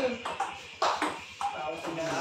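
Celluloid table tennis ball clicking off the bats and bouncing on the table in a rally: several sharp taps, the loudest a little under a second in.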